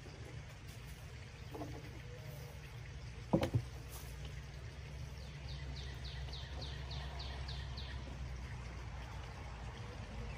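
Quiet outdoor background with a low steady rumble. A single sharp knock about three seconds in is the loudest sound, and from about five seconds in a bird calls a quick run of about ten down-slurred notes.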